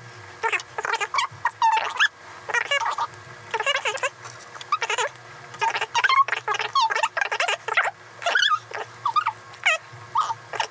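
Two people's voices talking, sped up by the time-lapse into fast, high-pitched chipmunk-like chatter with no intelligible words.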